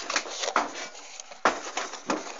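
Rustling handling noise with a few small clicks and one sharp knock about one and a half seconds in, as a plastic bottle is brought up against a garden tap on a wooden fence post.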